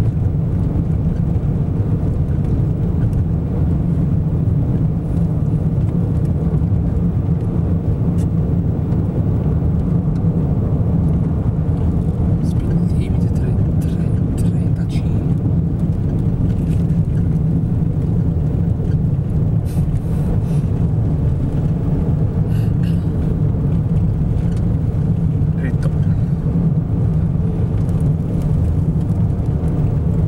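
Steady, loud low rumble of wind and road noise inside a moving car's cabin, driving through a dust-laden outflow wind.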